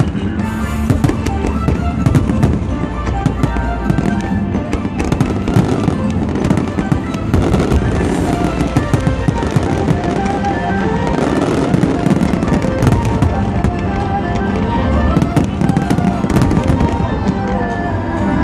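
Aerial fireworks bursting and crackling in rapid, continuous succession, with music playing throughout.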